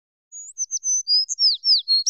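A bird-chirp sound effect over dead silence: a quick run of high twittering chirps, several of them falling in pitch, starting a moment in.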